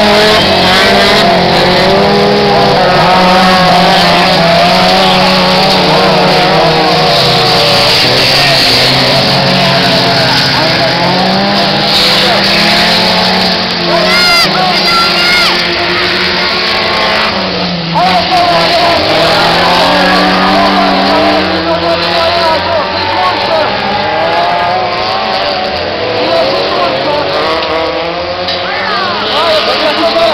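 Autocross race cars' engines at full throttle on a dirt track, the pitch climbing and dropping again and again as they accelerate, shift and brake for the corners, with more than one car audible at once.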